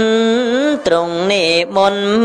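A Buddhist monk's voice chanting a Khmer Dhamma sermon, holding long melodic notes at a steady pitch, with two short breaks.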